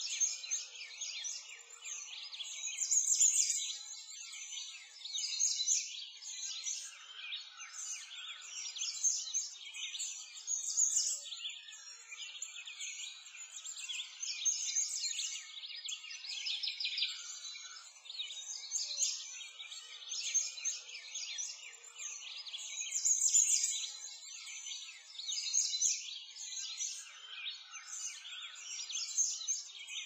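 A dense chorus of small birds chirping and singing, rapid short calls overlapping throughout.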